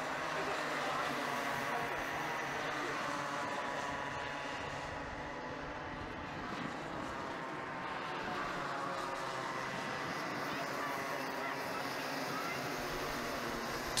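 Several small two-stroke Bambino kart engines running together as the pack circulates, a steady buzz of overlapping engine notes drifting slowly up and down in pitch.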